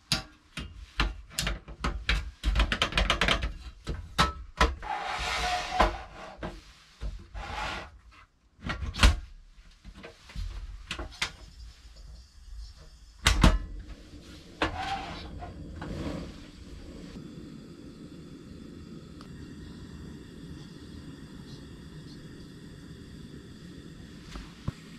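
Clicks, knocks and short scraping rasps of a butane gas canister being fitted and locked into a Campingaz Camp Bistro portable stove and its compartment cover being shut. The handling stops about sixteen seconds in, leaving a steady low hum.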